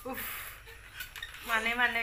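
A child's voice: a short "oh" right at the start, with a brief hiss over it, then a longer, wavering call about one and a half seconds in.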